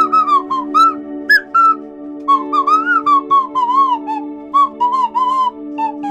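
Slide whistle playing a melody of short swooping notes, each bending up and then down in pitch, with a short pause about two seconds in. Beneath it a steady held backing chord plays throughout.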